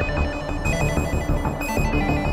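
Electronic music played live on a modular and hardware synthesizer rig: a pulsing bass pattern under bright, repeating high synth tones, with a hissy noise layer coming in about two-thirds of a second in.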